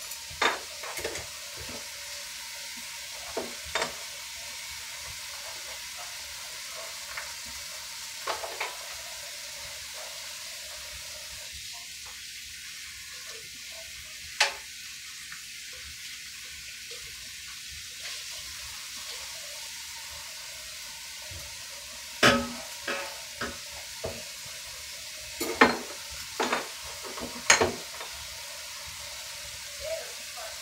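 Dishes being washed by hand in a kitchen sink: a steady hiss of running tap water with scattered clinks and clanks of dishes, more of them and louder in the last third.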